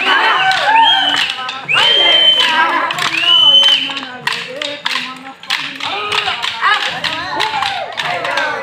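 Wooden sticks clacking against each other again and again in a group stick dance. Voices call out over the clacks in the first half.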